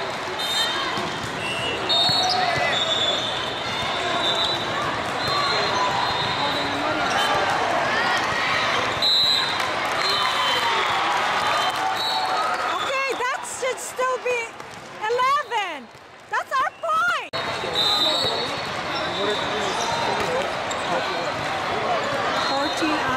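Volleyballs being hit and bouncing on indoor courts, mixed with players' shouts and a crowd talking, in a large hall. The sound drops out in several short gaps about two-thirds of the way through.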